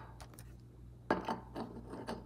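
Rigid plastic card holders clicking and tapping against clear acrylic display stands and the tabletop as a card is set in place. A quiet first second, then a handful of sharp clicks from about halfway in, the first the loudest.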